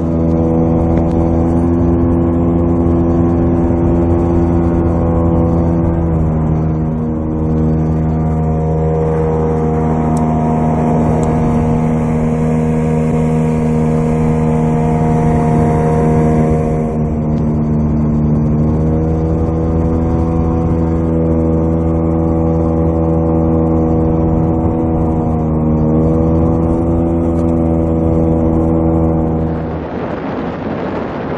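Outboard jet motor on an inflatable boat running at speed, heard from on board as a loud, steady drone with a rush of water. Its pitch dips and glides back up a couple of times as the revs change.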